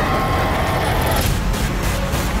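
Dense movie-trailer sound mix: a deep, steady rumble with a high tone gliding downward over the first second.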